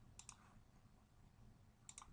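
Faint computer mouse clicks: a quick double click shortly after the start and another near the end, over near-silent room tone.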